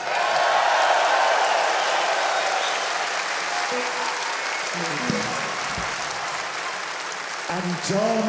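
A large concert audience applauding, loud at first and slowly dying down. A voice comes in over it near the end.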